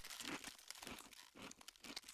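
Faint crunching and tearing sound effect: a quick run of small crackles and clicks.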